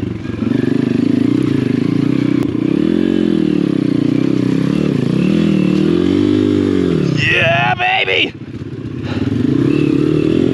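Apollo RFZ 125cc pit bike's single-cylinder four-stroke engine revving up and down under load as it climbs over roots and rocks. The revs climb high about seven seconds in, fall away abruptly near eight seconds, then pick back up.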